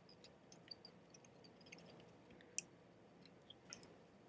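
Near silence with faint, scattered small clicks and ticks from hands working materials at a fly-tying vise, one sharper click about two and a half seconds in.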